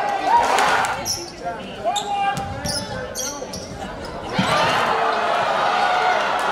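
Basketball game sounds in a gym: the ball bouncing and knocking, over crowd voices that grow louder about four and a half seconds in.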